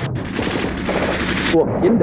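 Rapid machine-gun fire in a dense, continuous battle soundtrack. It cuts off about a second and a half in, and a voice follows.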